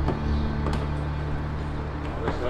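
A front door being opened: a short latch click, over a steady low hum.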